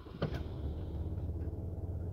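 2022 Ram 3500's 6.7-litre high-output Cummins straight-six turbodiesel catching from push-button start, with a short burst as it fires and then a steady idle, heard from inside the cab. It starts right up.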